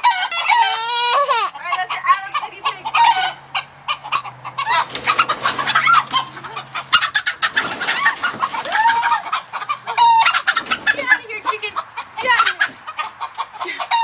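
Chickens in a coop clucking and squawking in quick, overlapping calls, with a stretch of dense scratching and rustling from about four to seven seconds in.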